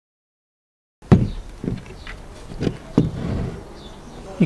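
Silent for about the first second, then handling noise from a break-barrel air rifle being taken apart on a wooden table. The metal action and wooden stock knock several times against each other and the tabletop, the sharpest knock coming about a second in, followed by a short rub.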